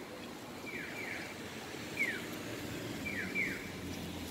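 Japanese pedestrian-crossing audio signal sounding its electronic bird-like chirp, a short falling tone repeated about once a second, alternating between a pair of chirps and a single one, over a low steady hum of street traffic.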